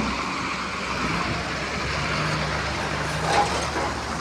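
Roadside traffic: a truck's engine hums under a steady rush of road and wind noise, with one brief sharp knock a little over three seconds in.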